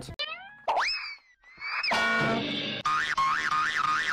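Comedic cartoon sound effects edited in: a few quick falling whistle-like glides, a long sweep that rises and falls back, then a short musical note and a tone warbling quickly up and down.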